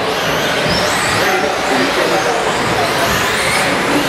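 Several 1/10-scale electric short-course RC trucks racing together: high motor whines rising and falling as they accelerate and brake, over steady tyre and track noise.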